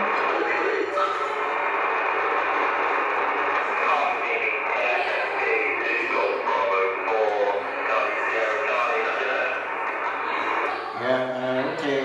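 Single-sideband reception from a Yaesu FT-1000 HF transceiver's loudspeaker: a steady hiss of band noise and static (QRN), with a faint, hard-to-copy voice from the distant station coming through it. A man starts speaking close to the microphone about a second before the end.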